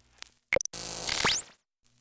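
Old recording's transition noise: two short clicks, then about a second of loud static and buzz with a whistle sweeping rapidly upward to a very high pitch, fading out into a brief silence.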